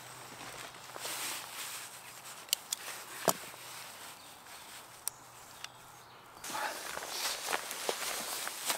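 Rummaging in an open camera backpack and lifting out a camera body: soft rustling of the bag and gear, with a handful of sharp clicks in the middle. The rustling grows louder near the end.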